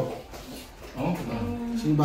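A person's voice drawing out a low "um, oh" about a second in, after a short lull.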